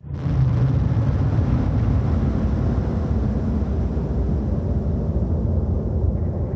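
Low, steady rumble of a nuclear explosion on archive test footage, starting abruptly and running on without a break.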